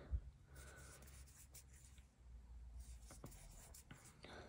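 Near silence with the faint scratchy rustle of cotton yarn being worked with a metal crochet hook, double crochet stitches being made, with a few light ticks.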